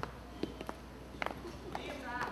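Quiet auditorium with faint audience murmur and a few scattered light knocks and taps.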